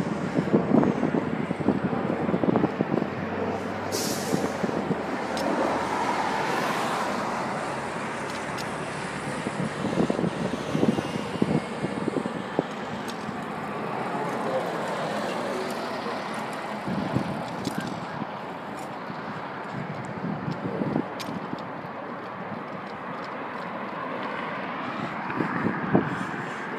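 Road traffic on a multi-lane city street: a steady noise of passing cars that swells and fades as vehicles go by.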